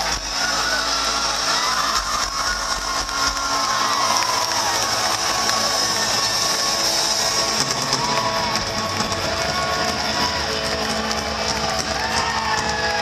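Irish punk rock band playing live, heard from inside the crowd, with the audience cheering and shouting over it. The heavy bass drops away about three and a half seconds in, leaving thinner music and crowd shouts.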